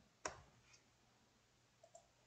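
A single sharp click about a quarter second in, from editing code at a computer, then near silence with a faint tick near the end.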